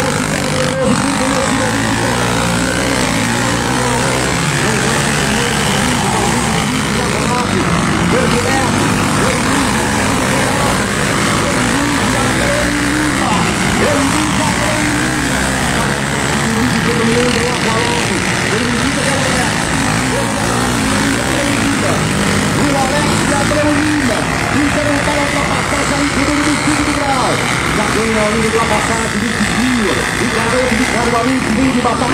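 Trail motorcycles racing on a dirt track, engines running continuously as the bikes ride around the circuit, with people's voices mixed in.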